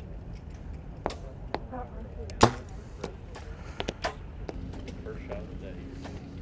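Bows being shot on an archery practice range: a scatter of short, sharp thwacks of bow shots and arrows striking target bags, the loudest about two and a half seconds in.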